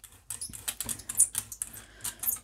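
Red rubber brayer rolled back and forth through tacky acrylic paint on a gel printing plate, giving a quick, irregular run of sticky crackling clicks as the paint spreads.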